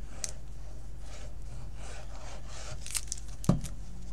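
Liquid glue bottle's applicator tip rubbing across card paper as glue is spread, with a few light clicks. A soft knock about three and a half seconds in as the bottle is set down on the craft mat.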